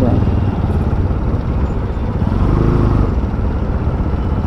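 Two-wheeler running at low speed, its engine hum mixed with steady wind rumble on the camera microphone.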